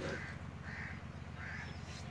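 A bird calling three times in short calls, about three-quarters of a second apart, over a steady low hum.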